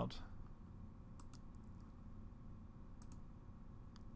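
A few faint computer mouse clicks: a close pair about a second in and another pair about three seconds in, over a low steady room hum.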